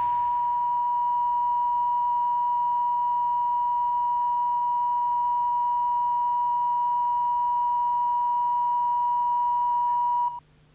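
A steady, unbroken test tone, a single pure beep held at one pitch: the reference tone that goes with colour bars.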